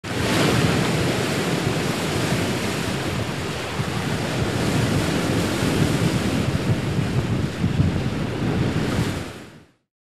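Steady rushing of ocean waves, swelling in at the start and fading out near the end.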